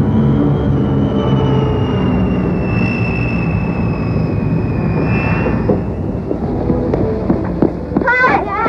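Vickers Viscount turboprop airliner passing by: a heavy rumble with a high engine whine that slides slowly down in pitch and fades after about five seconds. A few faint knocks follow near the end.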